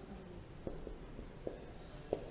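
Marker pen writing on a whiteboard, faint, with two short taps about a second apart.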